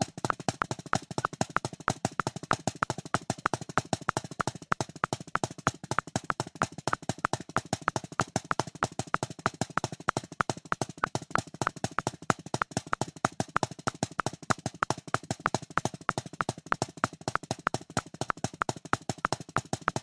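Drumsticks playing paradiddle variations at 190 BPM: a fast, even stream of single strokes with regularly recurring louder accented strokes.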